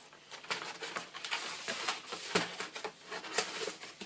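Cardboard shipping box being handled and opened, with irregular rustles, scrapes and light knocks as its contents are dug out.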